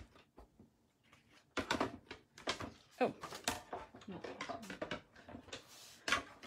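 Irregular clicks, knocks and plastic clatter of a die-cutting and embossing machine and its plates being handled and set in place, starting about a second and a half in after a quiet moment.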